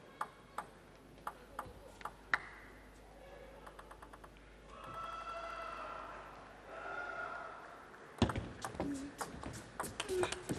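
A table tennis ball bounced several times on the table before a serve, as a run of sharp separate clicks. About eight seconds in, a rally starts with quick clicks of the ball hitting paddles and table. Faint voices are heard in the middle.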